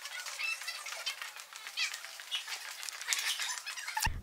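Faint footsteps on a polished hard floor, with soft scuffs and a few short, high squeaks from rubber-soled shoes.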